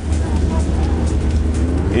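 Engine noise from race cars, a steady low rumble, with one engine revving up in pitch in the second half.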